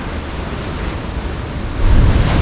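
Ocean surf washing and breaking against a rocky granite shore in a steady rush that swells louder near the end, with wind rumbling on the microphone.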